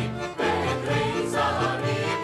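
A mixed choir of men and women singing an Israeli song together in unison.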